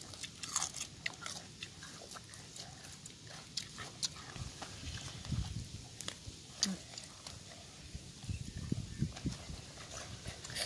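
Small clicks and soft wet handling sounds of hands cleaning a raw squid and picking up cucumber pieces on a banana leaf, with a few short low sounds around the middle and near the end.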